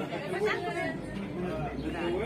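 Indistinct chatter: several people talking over one another in a small group.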